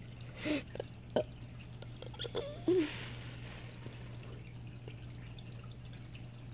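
Faint dripping of water over a steady low hum, with a few short clicks and a brief child's 'uh' in the first seconds.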